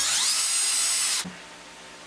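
Porter-Cable 20V cordless drill boring a hole into a wooden board: its motor whine rises in pitch as it spins up, holds steady, and cuts off abruptly about a second and a quarter in.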